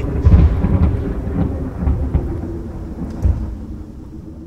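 Logo-sting sound effect: deep thunder-like rumbling with a few low booms over a faint held low tone, slowly dying away.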